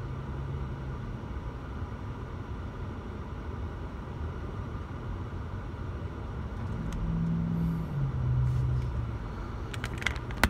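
Car engines in slow city traffic, heard from inside a car's cabin as a steady low rumble. About seven seconds in, an engine hum grows louder and steps down in pitch a second later, and a few sharp clicks come right at the end.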